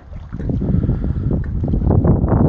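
Wind buffeting a phone's microphone, a loud, uneven low rumble that swells up about a third of a second in.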